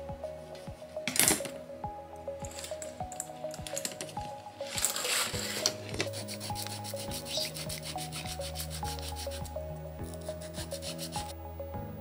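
Rubbing and scraping noises from hand work on a leather-covered seat: a short stroke about a second in and a longer one around five seconds in, over background music with a slow melody.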